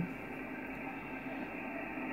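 Steady hiss of static from an Icom IC-7600 HF transceiver's speaker on the 10 m band in upper sideband, cut off sharply above the receiver's narrow audio passband, with no station's voice coming through. It is the band noise that a QRM Eliminator, just switched on, is being used to cancel.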